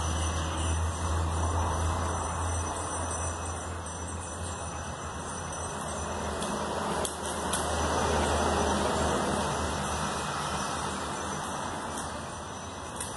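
Steady low hum with a hiss over it, and faint crinkling of clear plastic transfer film being slowly peeled back from a vinyl decal on a motorcycle fuel tank.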